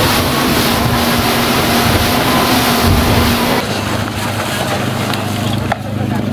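Speedboat engine running at speed, heard from inside the covered passenger cabin, mixed with rushing water and wind noise. About three and a half seconds in, it gives way abruptly to a quieter, steadier low engine hum.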